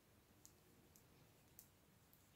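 Near silence: room tone with three faint, short clicks about half a second apart.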